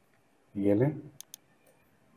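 A computer mouse double-clicked: two quick, sharp clicks close together, selecting a word in the code editor.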